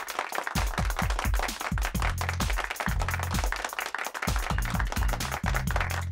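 Wrestler's entrance music from a 1984 television broadcast: a fast, steady beat over a bass line that moves between notes.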